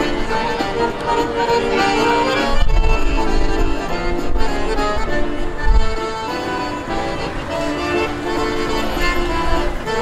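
Piano accordion playing a tune in sustained, reedy chords and melody. A low rumble runs beneath the music from a few seconds in until about the middle.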